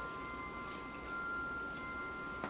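A few faint, steady high-pitched tones ringing on together in a quiet room, with one soft click a little before the end.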